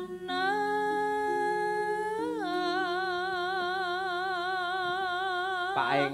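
Javanese sinden (female gamelan singer) singing one long held note with a slow vibrato into a microphone. Her pitch lifts briefly about two seconds in, settles back, and the note breaks off near the end.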